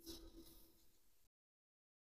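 Near silence: faint room tone with a thin steady hum, dropping to dead silence about two-thirds of the way through.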